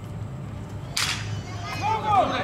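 One sharp crack of a wooden bat hitting a pitched baseball about a second in, followed near the end by voices shouting.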